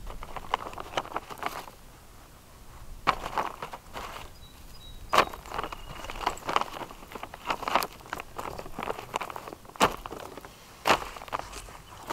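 Clear plastic sheeting rustling and crinkling as it is handled and smoothed over a garden bed, with a few sharp clicks and knocks.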